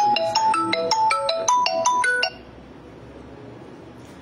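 Phone ringtone playing a quick melody of short chiming notes, cut off suddenly about two seconds in.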